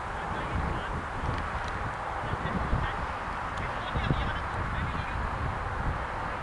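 Open-field ambience: wind buffeting the microphone with an uneven low rumble, and a few faint, short distant calls above it.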